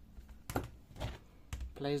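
Three light plastic clicks, about half a second apart, from hands handling the laptop's plastic case and battery; a voice begins just at the end.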